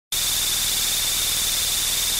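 Steady recording hiss, like static, with a thin high whine running through it at an even level: the camera's own electronic noise.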